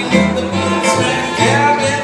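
Small swing jazz trio playing an instrumental passage: clarinet carrying a bending melody over plucked upright bass notes and strummed acoustic guitar.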